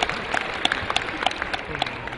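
Scattered hand claps, a few people applauding over background crowd noise, the claps irregular at a few a second.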